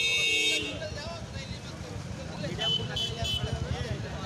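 Vehicle horn held loud and steady, cutting off about half a second in, then three short horn toots close together near three seconds in, over a crowd of voices.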